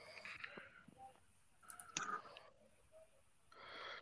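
Near silence with faint breaths and small mouth sounds picked up by a microphone, and a breath drawn in near the end.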